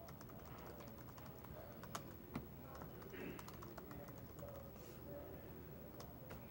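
Faint typing on a computer keyboard: irregular key clicks, two of them louder about two seconds in.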